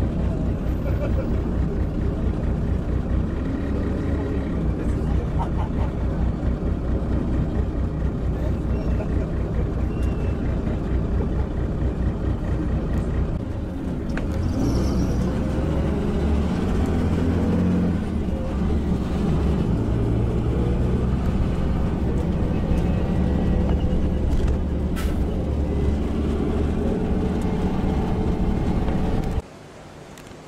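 Steady low rumble of a moving vehicle heard from inside its cabin, with indistinct chatter of passengers. It cuts off suddenly near the end.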